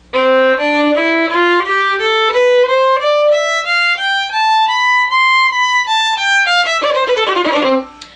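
Fiddle (violin) bowed in a two-octave C major scale, played one note at a time from middle C up to high C without a break and straight back down. The climb is steady and the descent is quicker.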